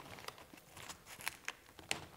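Faint rustling and crinkling of a softbox's silver reflective fabric and diffuser being handled at a corner and tucked under Velcro, with a few light sharp ticks, the clearest near the end.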